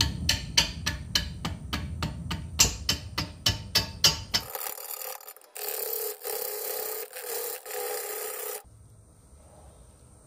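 Turning gouge cutting a wet, out-of-round red oak log spinning on a wood lathe at about 210 rpm: a knock each revolution, about three and a half a second, over a low rumble as the tool catches the high spots. After about four and a half seconds it turns to a steady hissing cut in several short passes, which stops a little before the end, leaving only a faint hum.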